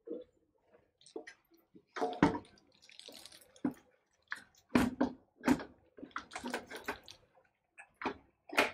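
A clear plastic bag crinkles and rustles in irregular bursts as a fan-mounted water-cooler radiator wrapped in it is handled inside a PC case, with a few sharp clicks and knocks among the rustling.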